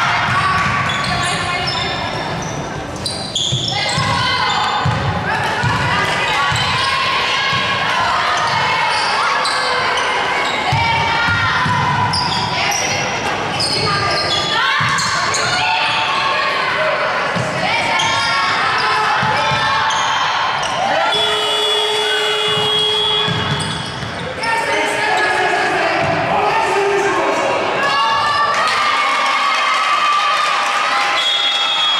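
A basketball bouncing on a hardwood court during live play, with players' voices calling out, echoing in a large sports hall.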